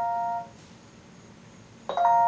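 A held digital piano chord played back from a recorded track, steady with no fade, cut off about half a second in; after a quiet gap a new chord comes in suddenly near the end.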